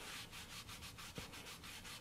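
Cloth rag rubbing back and forth over a wooden paddle blade, wiping off wet chalk paint and glaze. Faint, quick, even strokes.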